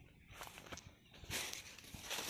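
Faint footsteps and rustling through dry grass and undergrowth, in a few short soft patches about half a second and a second and a half in.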